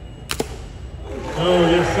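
A single short shot from a rifle about a third of a second in, followed by a man's voice near the end.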